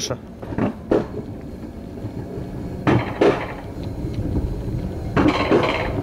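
Alpine coaster sled being hauled uphill along its metal rail track: a steady low rumble with a few sharp metallic clanks from the lift mechanism, in pairs about two seconds apart.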